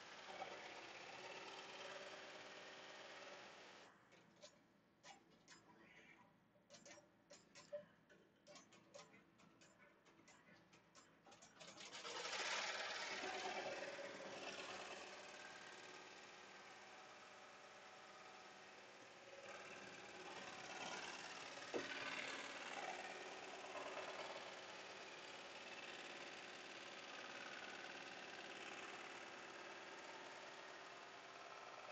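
Melco 16-needle commercial embroidery machine stitching out a patch at speed (about 1100 stitches a minute), faint and steady. About four seconds in the sound drops out in choppy gaps for several seconds, then comes back, a little louder for a few seconds.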